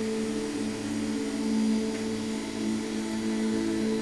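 Background music: a sustained drone of low held tones.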